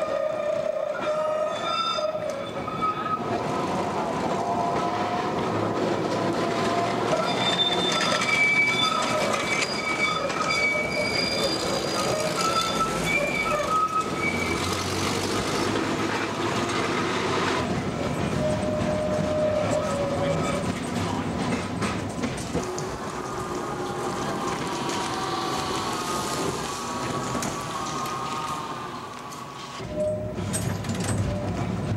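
Vintage double-deck electric tram running on street track, its steel wheels squealing as they grind round the curves. Drawn-out high and lower squealing tones come and go over a steady running rumble.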